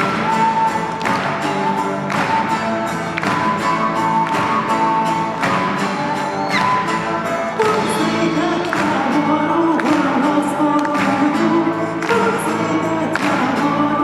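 A live acoustic band playing: acoustic guitars with a steady beat about once a second. Singing comes in about halfway through.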